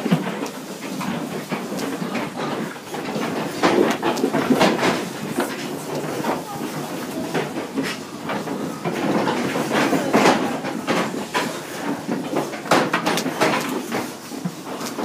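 Pigs moving about inside a metal livestock trailer, with irregular clanks and knocks against the metal sides and floor and occasional grunts.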